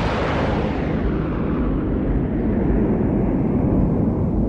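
Fighter jet passing: a rushing engine roar that swells sharply at the start and slowly fades over the next few seconds, with a deep rumble underneath.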